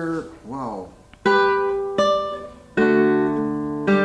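Classical guitar with nylon strings: four plucked notes and chords, about a second apart, each ringing on and slowly fading. A brief spoken word comes just before the first note.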